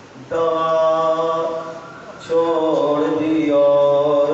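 A man's voice chanting a mournful melodic recitation of the zikr of Imam Hussain into a microphone, in two long held phrases. The first starts a moment in, and after a short pause near the middle the second phrase begins.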